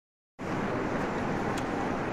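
Steady background noise picked up by the microphone before the talk begins, starting abruptly about a third of a second in: an even hum and hiss with no distinct events.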